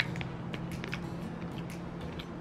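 Dried banana chips crunched while chewing: scattered short, crisp clicks over a steady low hum.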